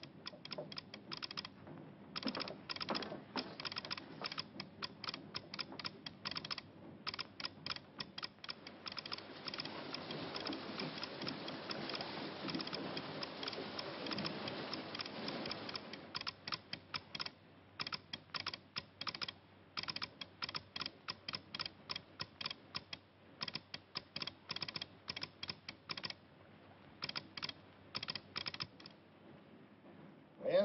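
Telegraph key of a ship's radio clicking out Morse code in quick, irregular runs. A hiss swells under the clicks in the middle.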